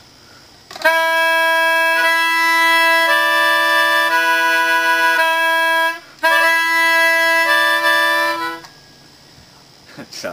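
A Melodihorn, a free-reed wind instrument with a small piano keyboard, blown through a long hose, with an accordion-like reed tone. It plays sustained chords over a held low note, with the upper notes changing, in two phrases broken by a short gap about six seconds in.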